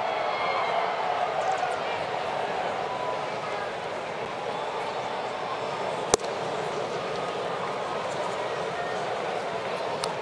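Steady murmur of a ballpark crowd, with one sharp pop about six seconds in as a 77 mph pitch, taken for a ball, smacks into the catcher's mitt.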